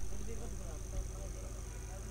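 Faint open-air ambience at a cricket ground: a steady low hum with faint, distant voices calling.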